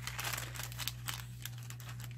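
Paper sheets rustling and crinkling faintly as they are handled and turned by hand, with a few small clicks, over a steady low hum.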